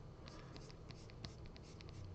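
Faint quick clicks and scratches of a pen stylus tapping and stroking across a drawing tablet's surface, a dozen or so short strokes in a row.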